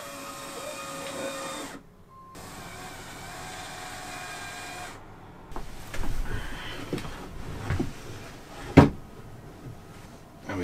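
Cordless drill running steadily as it drives screws, in two runs broken off briefly about two seconds in. After that come scattered knocks and handling noise, with one sharp loud knock near the nine-second mark.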